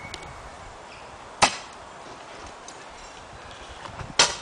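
A single sharp knock about a second and a half in, over a faint steady outdoor hiss.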